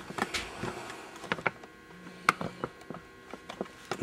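A few light, scattered clicks and taps of hand tools being handled on a shop workbench, about six short knocks spread over the few seconds.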